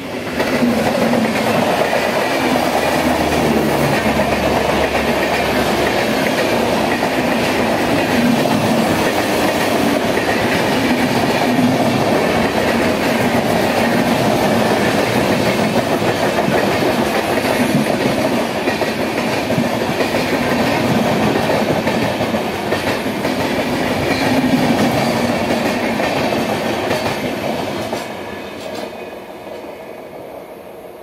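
Indian Railways express passenger train, the East Coast Express, running past at speed: loud, steady noise of its wheels on the rails that starts suddenly about half a second in and fades over the last few seconds as the train moves away.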